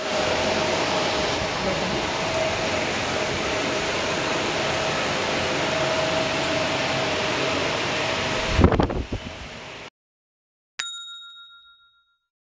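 A steady, loud rush of air with a faint hum from a fan or blower, broken by a low thump near the end before it cuts off abruptly. After a short silence, a single bright electronic chime rings out and fades over about a second.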